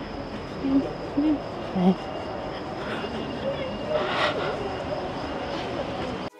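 Outdoor city-street ambience: a steady wash of distant traffic with a thin high whine, and three short low voice-like sounds in the first two seconds.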